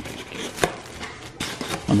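Foam packing insert being handled in a cardboard box: rubbing and scraping with a few sharp knocks.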